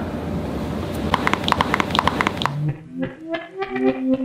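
A quick run of about ten sharp pops from the spine as the chiropractor's hands thrust down on the upper back during a thoracic adjustment. About halfway through it gives way to the start of a short electronic logo jingle.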